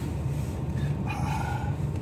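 Steady low rumble of a vehicle's engine and road noise heard inside the cabin, with a brief faint higher tone about a second in.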